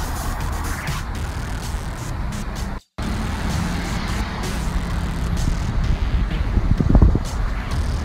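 Road traffic on a busy multi-lane city avenue: a steady hum of passing cars, with a louder low rumble about seven seconds in. The sound cuts out for an instant near three seconds.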